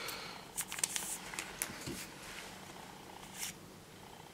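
Trading cards sliding and rubbing against each other as they are flipped through by hand: a soft rustle in the first second, then a few light clicks as card edges snap past one another.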